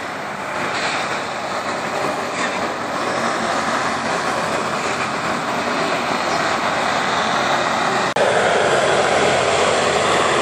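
LORAM rail grinder working along the track, its grinding stones on the rail and its engines making a loud, steady rasping noise that grows louder as it comes nearer. About eight seconds in the sound drops out for an instant and comes back louder.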